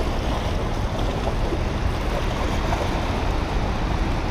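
Steady rush of turbulent whitewater pouring below a spillway, with a low, uneven wind rumble on the microphone.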